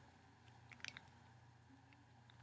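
Near silence: room tone with a low hum, and a few faint soft clicks a little under a second in from a small plastic toy figure being picked up by hand.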